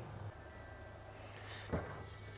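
Faint steady low hum from the running Masterbuilt Gravity Series 800 grill with its rotisserie turning, and a short soft sound near the end.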